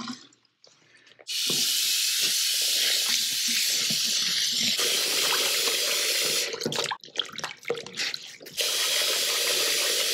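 Bathroom sink tap running into the basin over a soaked stuffed toy while hands scrub it. The stream starts about a second in, breaks up into splashing for a couple of seconds past the middle, then runs steadily again.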